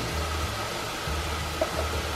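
Chopped onions frying in oil in a stainless steel pot, a steady sizzle.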